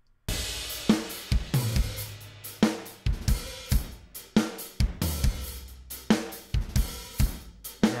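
Recorded rock drum kit played back: kick, snare, hi-hat and cymbals in a steady beat, starting a moment in. This is a verse, where the drummer hits the snare a little softer than in the chorus. Low sustained notes ring under some of the kick hits.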